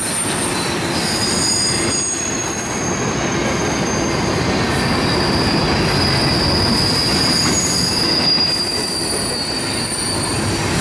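Freight train of double-stack intermodal well cars rolling past, a steady rumble of wheels on rail. Over it runs a high-pitched wheel squeal in several tones that swell and fade, loudest in the second half.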